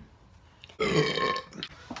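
A single loud burp about a second in, lasting about half a second.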